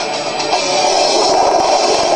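Short burst of TV show title music, played over an animated logo sequence.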